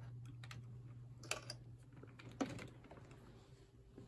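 Handling noise: a few light clicks, then two sharper taps about a second and two and a half seconds in, over a steady low hum.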